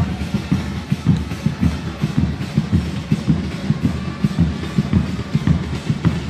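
Drums, bass drum and snare, beaten in a steady fast rhythm, of the kind protesters play at a street demonstration.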